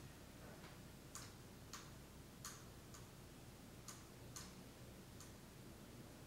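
Near silence: room tone with faint, sharp ticking clicks, about one to two a second and unevenly spaced.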